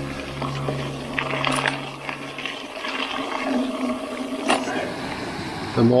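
Soft background guitar music fades out over the first two and a half seconds. After that comes the uneven rushing of river water pouring through weir gates.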